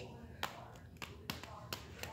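Four faint sharp taps, spread over two seconds, from handling a plastic doll and the phone filming it.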